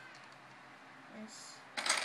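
A short burst of plastic Lego bricks clicking and clattering together near the end.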